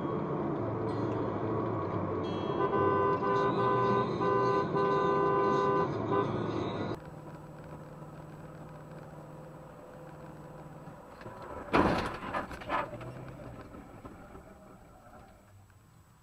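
Road traffic noise with a car horn honking in several short blasts in a row. Then the sound drops to a quieter road hum, and a sudden loud impact comes about twelve seconds in, followed by a couple of smaller knocks.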